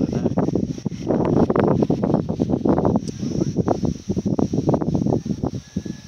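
Wind buffeting the microphone: a loud, uneven rumble with gusts. A faint steady high-pitched hum runs underneath.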